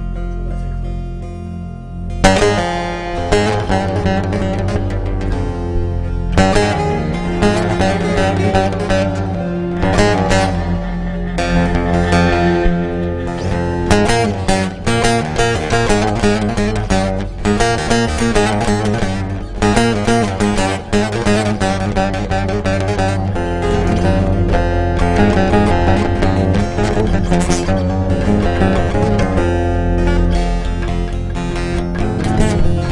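Instrumental introduction of a Turkish folk song (türkü), with no singing. A low held sound for about two seconds gives way to fast plucked bağlama lines over a sustained bass.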